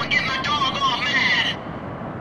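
A voice trails on at the tail of the music track over a steady low rushing noise. About one and a half seconds in, the voice cuts off suddenly and only the steady rush remains.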